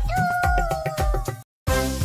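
Hindi nursery-rhyme song with a beat: a voice holds one long note that sags slightly in pitch. About a second and a half in, the sound cuts out for a moment, then the next song's music starts.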